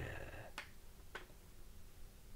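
A man's hesitation sound trailing off, then two small sharp mouth clicks about half a second apart.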